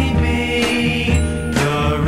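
Music from a 1960s pop recording: the band playing with sustained chords and regular percussion hits, between sung lines.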